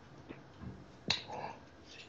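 A few faint mouth clicks picked up close by a handheld microphone, with one sharper click about a second in.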